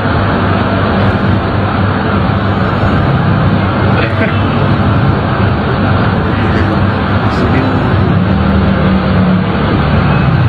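Loud, steady street traffic noise with indistinct voices mixed in.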